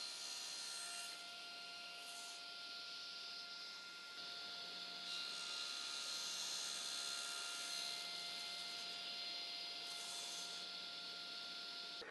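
Table saw running and cutting a small piece of wood held in a jig: a steady, fairly quiet whine with noise, a little louder from about four seconds in.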